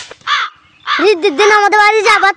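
Only speech: a child talking in a high, loud voice.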